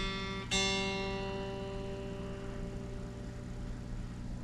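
A single string on a Solar A2.7C seven-string electric guitar, unamplified, plucked and left to ring as its pitch is checked for intonation. It is picked again about half a second in, and the note then rings on and slowly fades.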